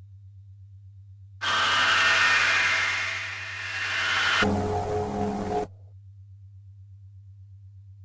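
Experimental synthesizer music: a steady low drone with a slight pulse, over which a dense, hissy swell rises about a second and a half in and fades, then a short pitched chord that cuts off suddenly, leaving only the drone.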